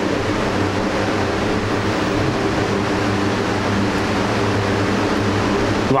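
Steady room background noise: an even hiss with a constant low hum, unchanging throughout and with no speech.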